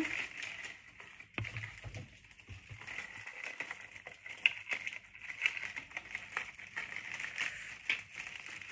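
Dried flower stems and foliage rustling and crackling as they are handled and worked into a bouquet, with irregular small crackles and one sharper snap about halfway through.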